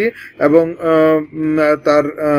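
A man's speaking voice with long, drawn-out syllables held at a steady pitch.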